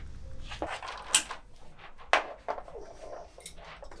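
Clicks and knocks of a microphone boom stand being handled and set at a bass drum's port hole, with two louder knocks about a second apart.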